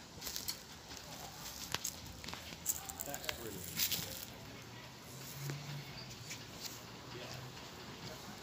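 Faint, distant voices of people outdoors, with scattered light clicks and crackles.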